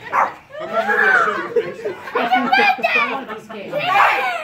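Several people talking over one another, exclaiming and laughing, with no clear words; about a second in, one voice gives a high call that rises and falls.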